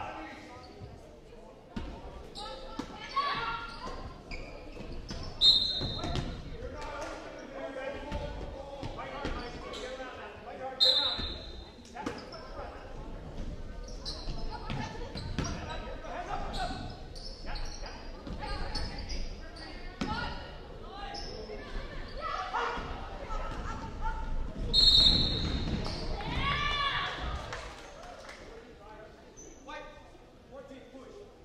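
Basketball game in a gym: a ball bouncing on the hardwood floor amid players' and spectators' voices, with a referee's whistle blown briefly three times, about 5 s, 11 s and 25 s in.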